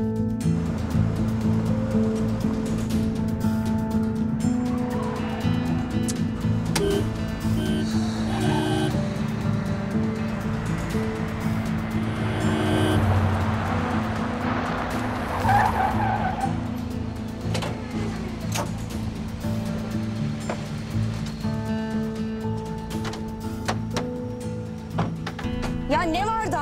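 Background music over car engines; about midway through, tyres squeal as a car brakes hard to a stop.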